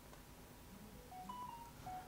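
Faint short electronic beeps about a second in: a few brief steady tones at different pitches, one after another.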